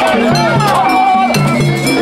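Japanese festival music (matsuri-bayashi): a melody of bending, ornamented notes over a steady rhythm, with a small metal hand gong struck about once a second.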